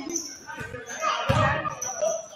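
Several basketballs bouncing on a hardwood gym floor with dull thuds, with short high sneaker squeaks and players' voices in the hall.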